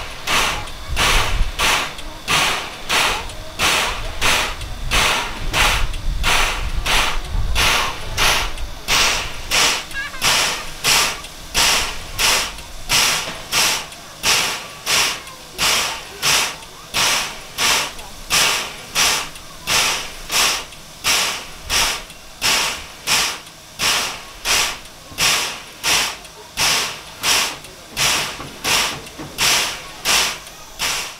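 C12 steam locomotive standing with its steam-driven air pump working: a steady rhythm of hissing strokes, a little over one a second. A low rumble sits under it for the first several seconds.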